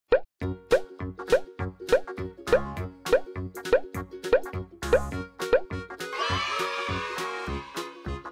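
Cheerful children's background music with a steady beat, over a run of about ten cartoon 'bloop' pop sound effects, each rising in pitch, one roughly every 0.6 s as each number pops onto the board. About six seconds in, the pops give way to a shimmering sparkle chime.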